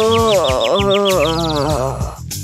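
Cartoon dizziness sound effect: a wavering, warbling tone with a fast run of short high chirps, about seven a second, that stops just before the end.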